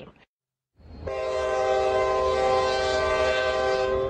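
A train's horn sounding one long steady chord of several tones over a low rumble, starting about a second in after a moment of silence.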